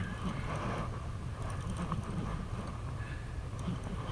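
Conventional casting reel being cranked while reeling in a hooked channel catfish, over a steady low rumble.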